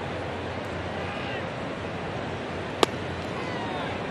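A pitched sinker of about 95 mph hitting the catcher's leather mitt with one sharp pop about three seconds in, over the steady murmur of a ballpark crowd.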